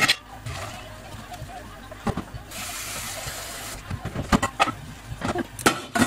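Hot water being poured off cooked rice from a saucepan into the sink, with a short rush of pouring water a little past halfway through the first half. Several sharp metal clanks of the pan and steamer follow near the end.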